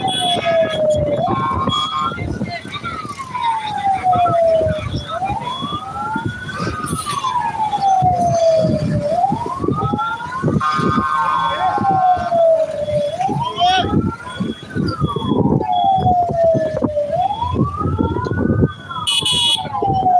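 Vehicle siren wailing, its pitch rising quickly and falling slowly in a cycle about every four seconds, over the road and engine noise of a moving vehicle.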